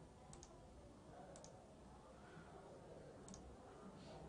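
Near silence: faint room tone with three small, sharp clicks spread across it.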